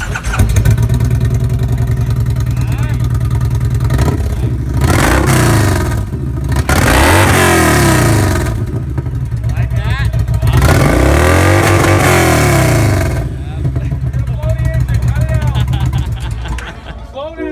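V-twin touring cruiser motorcycle running with a deep, even pulse, revved up and let fall back several times in the middle, then settling back to idle near the end.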